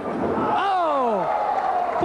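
A long, falling "ohh" exclamation from one voice, with arena crowd noise around it.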